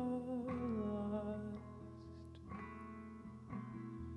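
Live acoustic guitar song: a male voice holds a note that slides down in the first second, over plucked acoustic guitar notes that go on more softly after the voice stops.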